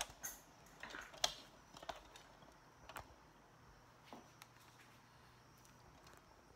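A scatter of light clicks and taps from handling things on the kitchen counter, the sharpest about a second in, fading to quiet room tone in the second half.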